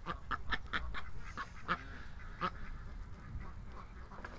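Domestic duck giving a quick run of about five short quacks, then two more single quacks spaced about a second apart.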